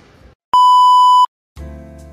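A single loud electronic beep, one steady high tone lasting under a second that starts and stops abruptly. It is set off by short silences on either side, and soft music begins near the end.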